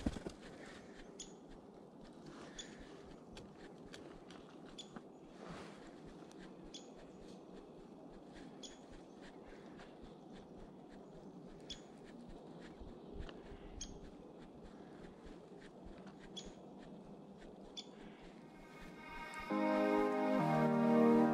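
Woodpecker giving short, sharp, high call notes, one every couple of seconds, over quiet forest hiss. Soft keyboard music comes in near the end.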